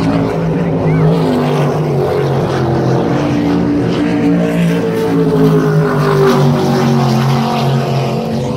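Offshore racing superboats running flat out across the water: a loud, steady drone of several engines heard from shore, the pitch drifting slowly down in the second half as the pack moves along the course.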